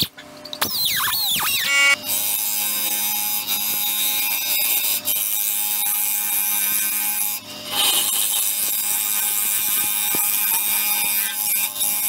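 Flat scraper cutting inside a spinning wood-and-resin bowl on a lathe, giving a loud high-pitched screech. It wavers as a squeal for the first two seconds, then holds steady, with a short break about seven and a half seconds in. The tool is grinding past a chunk of metal embedded in the blank.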